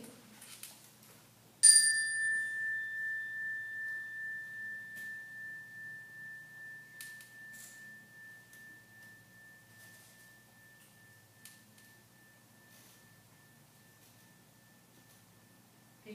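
A meditation chime struck once, ringing a single high, clear tone that wavers as it slowly fades over about ten seconds. It is the signal for a moment of quiet to clear the mind.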